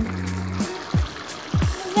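Background music: held low bass notes with a few short drum beats.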